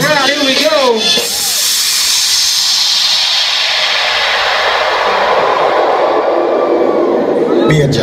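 DJ noise-sweep effect over the sound system: a long hiss that sinks steadily in pitch for about six seconds, after a short bending vocal-like phrase at the start. Near the end the music's beat drops back in.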